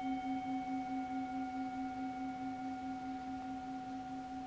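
The long ring of a struck singing bowl: one steady low tone with fainter higher overtones, slowly fading with a slight waver.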